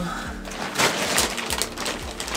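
Fabric rustling and swishing as a rolled Japanese futon mattress (shikibuton) is unrolled and lifted upright by hand, getting busier about half a second in.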